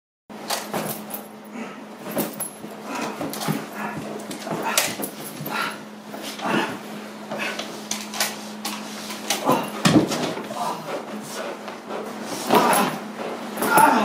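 A Belgian Malinois biting and head-shaking on a decoy's bite suit: irregular scuffles and knocks of the suit and the dog against the floor, together with the dog's own sounds, over a steady low hum.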